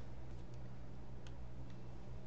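Quiet room tone: a steady low electrical hum on the recording, with a few faint clicks.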